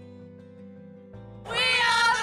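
Soft background music, then about one and a half seconds in, women's voices break in with a loud, high-pitched shout.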